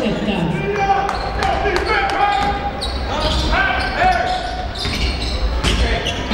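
Live basketball game sound in a gym hall: a ball bouncing on the court with repeated sharp knocks, short sneaker squeaks on the floor, and crowd voices over a steady low rumble of the hall.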